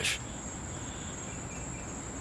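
Insects trilling outdoors in one steady, unbroken high-pitched note, over a low background hum of outdoor noise.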